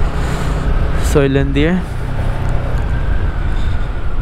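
Motorcycle riding at speed: a steady low wind rumble on the microphone with the engine underneath. A short voice is heard a little over a second in.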